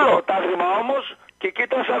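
Only speech: a phone-in caller talking over a narrow telephone line on a radio show.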